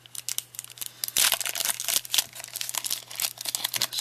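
Foil wrapper of a Pokémon Gym Challenge booster pack being torn open and crinkled by hand: a dense run of crackles, loudest just over a second in.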